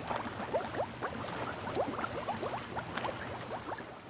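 Underwater bubbling sound effect: many small bubbles rising in quick succession, each a short upward blip, over a low steady rumble. It begins to fade out near the end.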